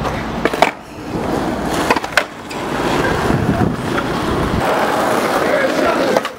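Skateboard wheels rolling over pavement in a steady rumble, with a few sharp clacks of the board about half a second and two seconds in.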